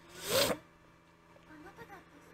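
A short breathy rustle close to the microphone, lasting about half a second just after the start, then faint dialogue.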